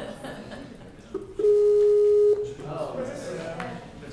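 Video-call ringing tone through the room's speakers: a short blip, then one steady tone lasting about a second, as the outgoing call rings. Quiet voices murmur around it.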